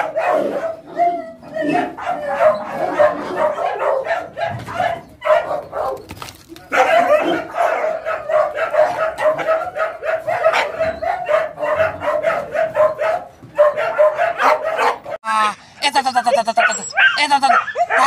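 Chained hunting dogs barking and yipping in rapid, near-continuous bursts. About three seconds before the end a second dog takes over with higher calls that glide up and down in pitch.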